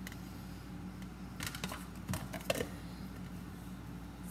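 Light clicks and knocks of kitchen items being handled during food preparation, bunched between about one and a half and three seconds in, over a steady low hum.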